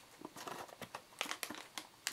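Torn-open paperboard snack box rustling and crinkling in the hands as it is turned over, in short irregular scrapes.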